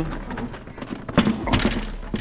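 A dining table being pushed into a van: handling noise, then a sharp knock about a second in, followed by brief scraping and rustling.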